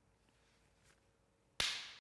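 Near silence, then about one and a half seconds in a single sudden sharp sound that fades within half a second.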